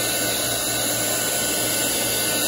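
Small handheld craft heat gun running steadily: a constant rush of blown air from its fan, warming a glued wood applique so it turns flexible and the glue grabs.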